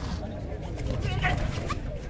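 Voices at a kabaddi court: the raider's rapid 'kabaddi, kabaddi' chant and shouting players over a murmuring crowd, with a few short, high-pitched yelps about a second in.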